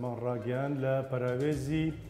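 A man speaking Kurdish in an even, fairly level-pitched voice, pausing briefly near the end.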